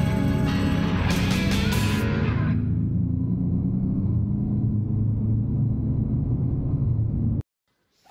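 Rock music with electric guitar for the first couple of seconds, giving way to a steady low rumble of motorcycles riding on the road, which cuts off suddenly near the end.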